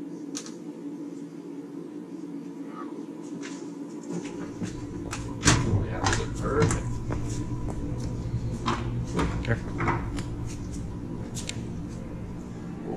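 Clicks, knocks and clatter of a convection microwave oven's door and a metal baking pan being handled as the pan is lifted out of the oven and carried. A louder knock comes about five and a half seconds in, with a low rumble underneath from about four seconds on.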